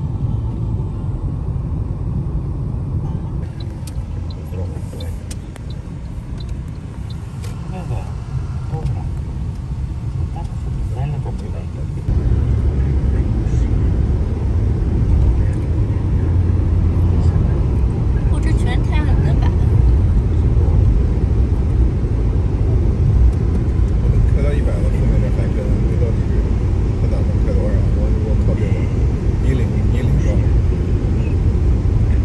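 Steady low road rumble inside a moving car at highway speed, from tyres and engine. It steps up noticeably louder about twelve seconds in.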